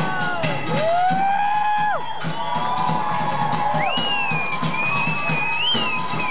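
A rock band's live drum line playing a steady, quick percussion beat, with long sliding high-pitched cries over it about a second in and again near the end.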